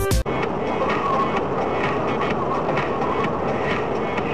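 Electronic music cuts off abruptly just after the start, giving way to a steady rush of vehicle and road noise with quieter music running faintly beneath it.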